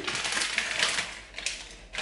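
Plastic instant-ramen packet crinkling and rustling as it is picked up and handled, loudest in the first second and a half, then fading.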